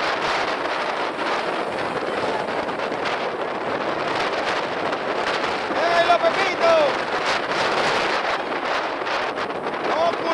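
Strong wind buffeting the microphone in a steady rush of noise, with surf breaking on the shore underneath.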